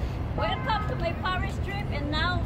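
Steady low rumble of city street traffic, with a person's voice talking over it from about half a second in.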